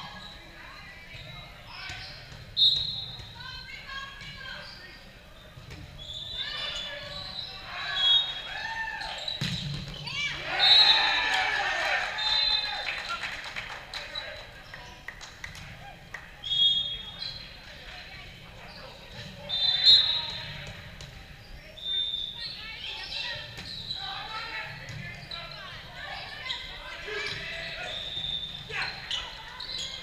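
Indoor volleyball play in a large, echoing gym: players' voices calling across the court, sharp hits and bounces of the volleyball, and short high squeaks from sneakers on the sport court, recurring throughout.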